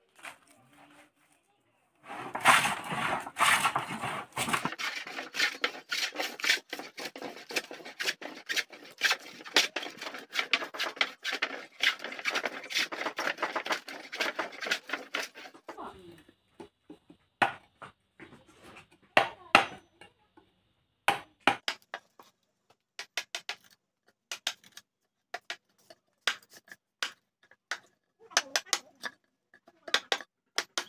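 Metal hand plane shaving a wooden board in quick repeated rasping strokes. From about 16 s in, a hammer striking a wooden-handled chisel in separate sharp knocks, cutting slots into timber beams.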